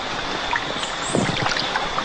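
Steady rushing hiss of river water flowing around floating inner tubes, with wind on the microphone.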